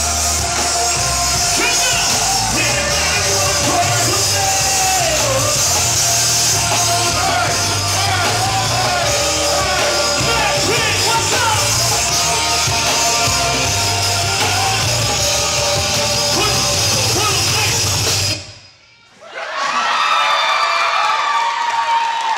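Live hip-hop music played loud through a venue's sound system, with a heavy, pulsing bass beat and voices rapping and shouting over it. About eighteen seconds in, the music cuts off abruptly; after a short gap, crowd voices and noise follow without the beat.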